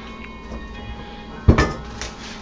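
A single sharp knock about one and a half seconds in, from the bowl or spatula against the kitchen counter, over quiet background music.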